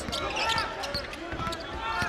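Basketball game on a hardwood court: the ball bouncing in short knocks, with voices from players and the crowd in a large gym.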